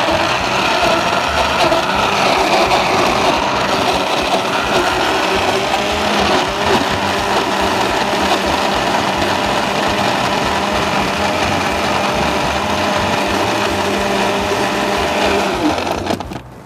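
Countertop electric blender running steadily at full speed, puréeing sliced banana for a smoothie, then cutting off at the very end.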